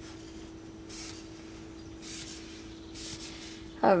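Soft swishes of tarot cards being slid and rubbed across a tabletop by hand, a few brief ones spread through, over a steady low hum.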